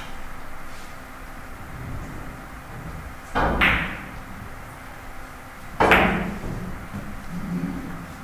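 Two sharp clacks of carom billiard balls being struck, about two and a half seconds apart, each ringing briefly, over steady hall background.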